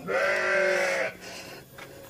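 A sheep bleating once, a steady call about a second long.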